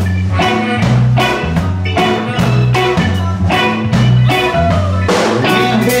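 Live blues band playing an instrumental passage between vocal lines: drum kit keeping a steady beat about twice a second under electric bass, electric guitar and keyboard, with a harmonica cupped to the vocal microphone.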